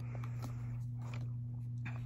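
A steady low hum with a few faint, soft clicks and handling noises, as trading cards are moved in the hands.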